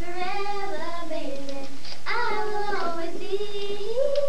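Children singing a song, held notes in sung phrases with a short break for breath about halfway through.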